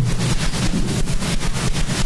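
A loud, steady rushing noise with a low hum underneath.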